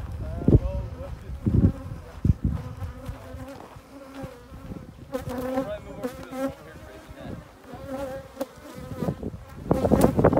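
Honeybees buzzing in the air around open hives, a wavering hum that swells and fades as individual bees fly close. A few short low thumps come in the first couple of seconds.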